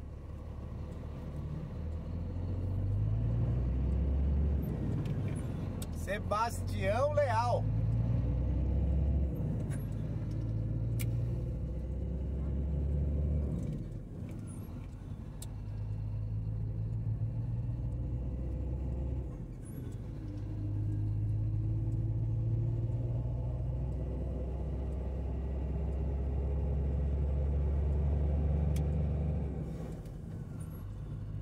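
Vehicle engine and road noise while driving at speed. The engine note steps up and down in pitch several times and dips briefly twice in the middle, as with gear changes. A short wavering high sound is heard about six to eight seconds in.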